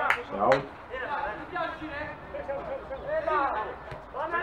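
Men's voices talking and calling on a football pitch, with two sharp ball strikes in the first half second.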